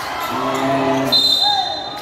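Referee's whistle blown once in a gym, a shrill steady note held for just under a second about halfway through. Just before it a held shout is heard over crowd noise.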